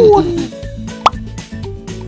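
Background music with a short, quickly rising 'bloop' sound effect about a second in. A voice trails off at the very start.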